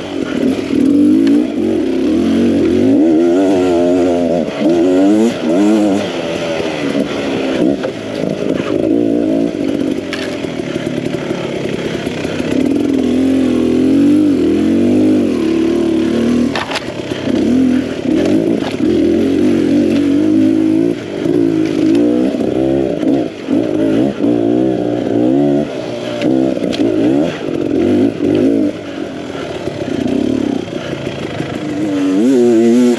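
Beta Xtrainer two-stroke dirt bike engine being ridden on rough trail, its pitch rising and falling constantly with the throttle. There are a few sharp knocks and some clatter.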